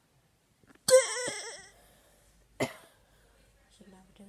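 A boy's short, loud cough-like vocal noise with a wavering pitch about a second in, followed about a second and a half later by one brief sharp burst.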